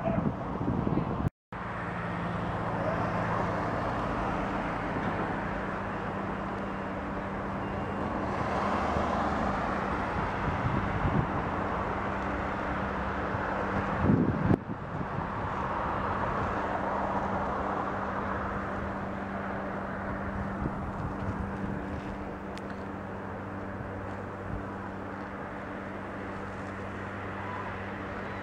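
Outdoor street ambience: a steady hum of road traffic with a low engine drone underneath. The sound drops out completely for a moment about a second and a half in.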